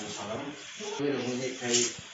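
Rubbing, scraping noise of the recording phone being handled as it pans, a hand or fabric brushing over its microphone, with one sharper scrape near the end. A man's voice goes on underneath.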